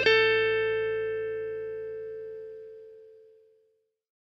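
A rock song's final guitar note, struck once and left to ring out, dying away over about three and a half seconds.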